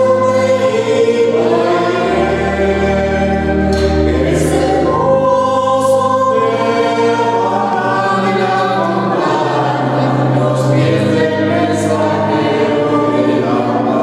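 A choir singing a sacred hymn in long, held chords.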